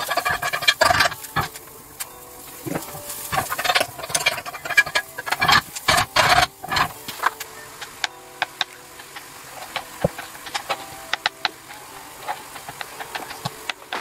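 Kitchen knife cutting hard-boiled eggs on a cutting board: a run of light taps of the blade striking the board. In the first half, louder bursts of clatter break in among the taps.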